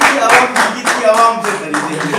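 Audience clapping together in a steady beat, about four claps a second, that dies away about a second in. Overlapping voices of people in the room follow.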